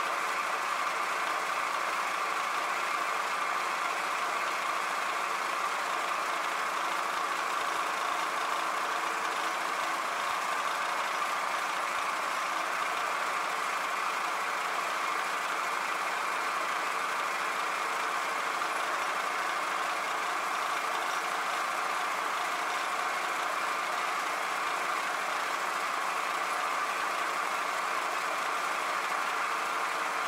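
Milling machine spindle running steadily with an end mill held in a drill chuck, taking a light spot-facing cut on a connecting rod's boss; an even motor and spindle hum with a few steady tones.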